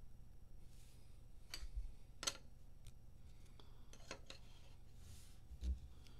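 Faint handling of trading cards in rigid plastic holders: a handful of sharp clicks and taps as a cased card is set into a display stand, with a couple of soft slides and dull low knocks on the table, over a steady low hum.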